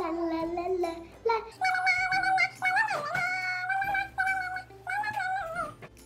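A young girl singing 'la la la' in long held notes that waver and bend in pitch, sung with her ears covered to block out other sounds. The singing breaks off just before the end.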